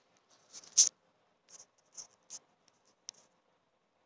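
Handling noise from a handheld phone camera: a handful of short, scratchy rubs, the loudest about a second in, with smaller ones spaced through the rest.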